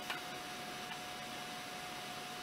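Quiet room tone: a steady hiss with a faint high hum, and one small click just after the start as a small plastic collectible piece is handled.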